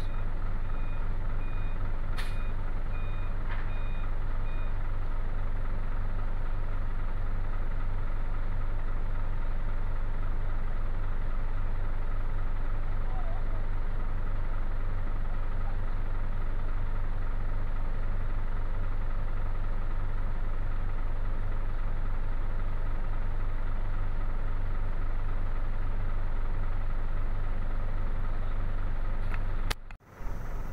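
Hino truck's diesel engine idling steadily, heard from inside the cab as an even low hum. For the first few seconds a reversing alarm beeps repeatedly in the background.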